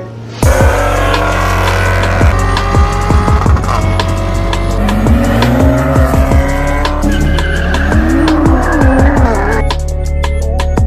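Car engines revving and tires squealing, mixed with loud intro music that has a heavy bass. It starts suddenly about half a second in.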